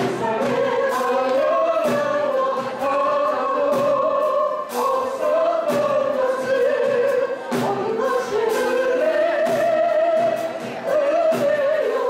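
Accordion ensemble playing while a woman sings the melody through a microphone, with a slow, sustained, wavering vocal line over steady held accordion chords.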